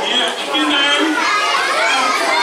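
Many children's voices talking and calling out at once, a steady hubbub echoing in a large hall.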